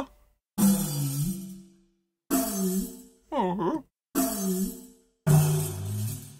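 Sampled riq drag effects from the Soundpaint Epic Frame Drums library, played on a keyboard: about five separate notes, each a jingling attack followed by a gliding, moaning drum tone that fades within about a second, almost like someone going 'aww'.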